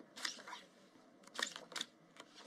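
Playing cards drawn from a baccarat dealing shoe and slid and flipped onto the felt table: a few brief scraping snaps, one near the start and two sharper ones about halfway through and near the end.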